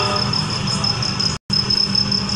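Steady background noise of a large outdoor gathering between phrases of a loudspeaker speech, with a low hum and a steady high thin tone, cut by a brief complete dropout about two-thirds of the way through.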